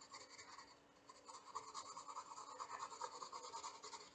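Graphite pencil scratching on sketchbook paper in quick, short, faint strokes while shading. The strokes grow denser and louder about a second in.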